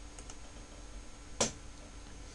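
A single sharp click about one and a half seconds in, after two faint ticks near the start, over a steady low background hum.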